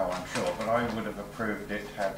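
Voices talking in a small meeting room, with the words not made out.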